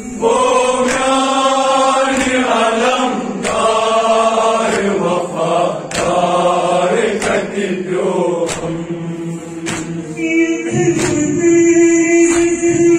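A group of voices chanting a Kashmiri noha, a Shia mourning elegy, with sharp beats about once a second.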